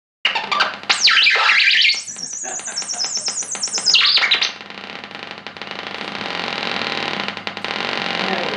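Small battery-powered DIY noise synth squealing: high electronic tones sweep down and trill, then warble rapidly at a very high pitch. The squeal cuts out about four and a half seconds in, leaving a quieter hissing crackle.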